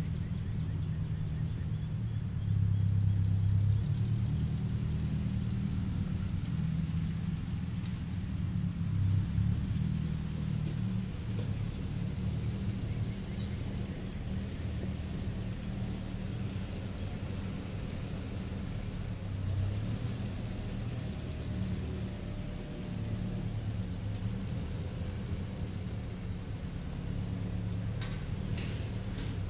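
An old Ford 640 tractor's four-cylinder engine running at a distance as it pulls a disc harrow over loose soil. It is a low, steady rumble that swells briefly a few seconds in and again around nine seconds.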